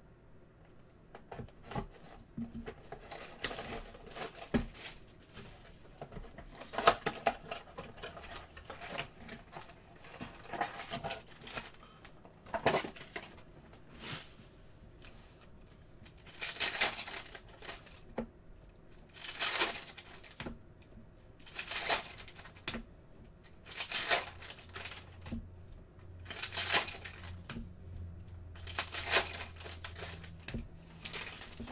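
A utility knife slitting the shrink wrap and cardboard of a trading-card blaster box, with soft crackling and clicks, then foil card packs crinkling and ripping as they are torn open one after another: six sharp rips about two and a half seconds apart in the second half.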